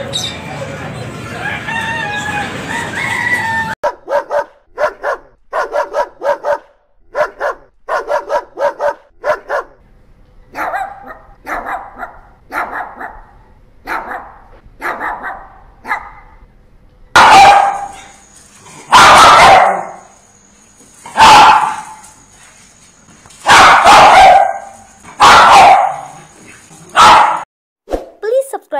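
Busy market noise for the first few seconds, then caged puppies yipping and barking in quick runs of short barks. From about two-thirds of the way in, a dog barks loudly, single barks about two seconds apart.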